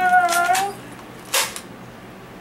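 A small dog gives one short, high-pitched whine lasting under a second at the start, agitated at a toy gun held to its face. About a second and a half in there is a brief sharp noise, then only faint room sound.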